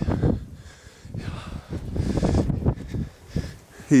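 Irregular rustling and soft knocks of a person moving about and stepping up metal boarding stairs, with light wind on the microphone.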